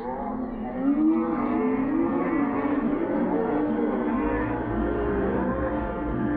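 Several voices calling out in long, drawn-out shouts that rise and fall and overlap, growing louder about a second in. These are players and onlookers shouting as the ball is hit high and fielders run to catch it.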